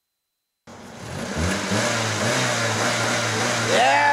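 Silence, then after about half a second a car engine starts to be heard running, getting louder over the next second, while young men laugh and cheer over it. Near the end comes a loud whooping shout.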